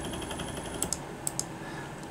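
Servo motor chattering in a steady, rapid buzz as the unstable closed loop oscillates, cutting off a little under a second in. A few sharp clicks follow.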